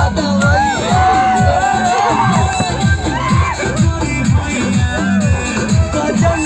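Bhojpuri DJ remix song played loud over a sound system, with a heavy, fast-repeating bass beat, while a crowd cheers and shouts over it.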